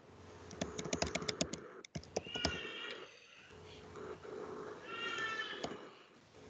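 Computer keyboard typing, a quick run of clicks about a second in, followed by two short high-pitched calls that waver in pitch, one about two seconds in and one near the end.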